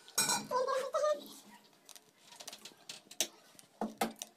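A steel lid clinks onto a steel kadai, followed by a few light metallic clicks of kitchen utensils. There is also a short vocal sound near the start.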